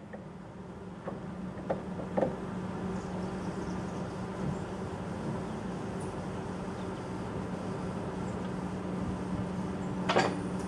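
Steady low mechanical hum, with a few faint clicks in the first couple of seconds.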